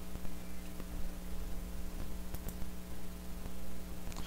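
Low, steady electrical hum with background hiss and a few faint clicks.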